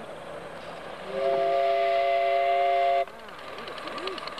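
Whistle of a miniature live steam locomotive: one blast of about two seconds, several notes sounding together as a chord, cut off sharply, over a soft hiss of steam.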